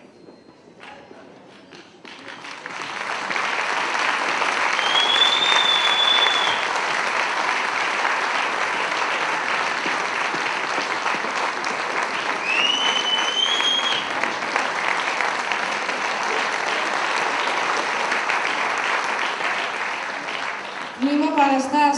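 Audience applauding: the clapping builds up about two seconds in and then holds steady. Two short, high whistles ring out over it.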